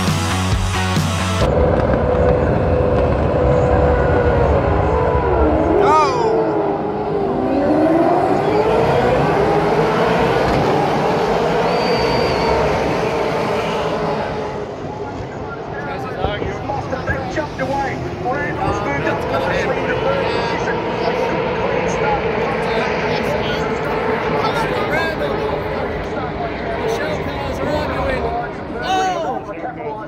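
V8 Supercars race cars' V8 engines running on the circuit, the engine note gliding up and down as the cars accelerate, change gear and pass. Rock music plays for about the first second and a half.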